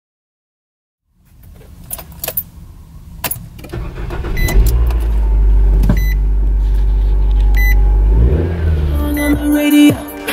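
Car ignition: a few clicks and rattles, then the engine starts about four and a half seconds in and runs at a fast idle, with a few short beeps over it.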